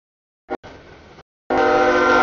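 Freight train rolling through a grade crossing, its noise coming in short fragments that cut in and out abruptly, then a loud locomotive horn chord of several steady tones sounding for under a second near the end.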